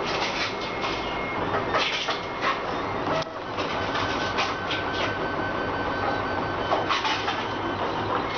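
Stepper motors of a large-format FDM 3D printer driving the print head through its printing moves: a steady mechanical whir with high whining tones that change pitch as the moves change, broken now and then by brief sharp noises.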